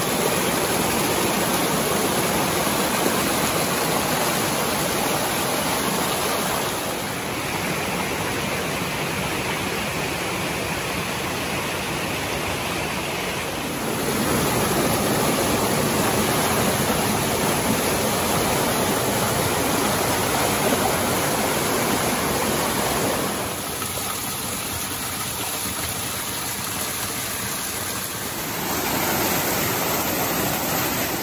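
Mountain stream rushing and splashing over boulders in small cascades, a loud, steady rush of water. Its level and tone change abruptly a few times: quieter about 7 seconds in, louder again near 14, quieter near 23 and louder near the end.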